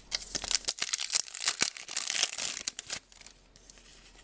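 A trading card pack's wrapper being torn open and crinkled, a dense crackling with sharp snaps for about three seconds, then quiet.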